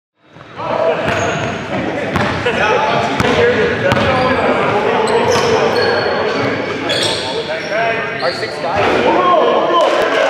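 Indoor basketball game: the ball bouncing, sneakers squeaking on the court floor and players calling out, all echoing in a large gym. It rises out of silence about half a second in.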